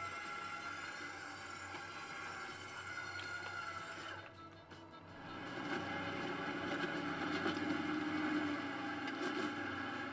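Quiet background music that dips briefly about four seconds in and comes back up a second later.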